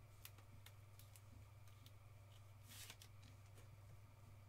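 Very faint handling sounds of a trading card being put into a clear rigid plastic holder: a few light plastic clicks and one short sliding rustle a little before three seconds in, over a low steady electrical hum.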